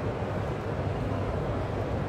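Steady background din of a large exhibition hall: a constant low hum under an even wash of indistinct noise, with no distinct events.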